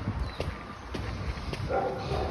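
A small dog gives a brief yap near the end, over a few soft footsteps on a dirt path.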